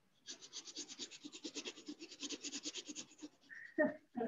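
Quick, even scratching or rubbing strokes, about ten a second, for about three seconds, then a brief squeak and a knock near the end.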